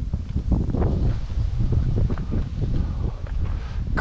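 Wind buffeting the camera's microphone: an uneven, gusty low rumble, with a few light knocks mixed in.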